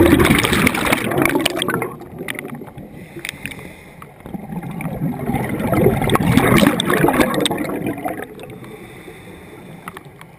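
Scuba regulator exhaust: a diver exhaling underwater, with bursts of bubbles gurgling past the camera. There are two long exhalations, one at the start and one from about the middle, with quieter breaths in between.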